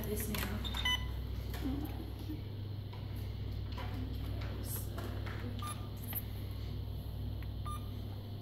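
Short electronic beeps from a volumetric infusion pump's keypad as its buttons are pressed, a few scattered single beeps over a steady low hum.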